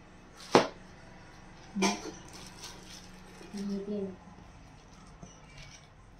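Two sharp knocks, the first about half a second in and the louder of the two, the second just over a second later, as a knife and cut bars of homemade laundry soap are handled on a plastic-covered table. A short murmur of voice comes in the middle.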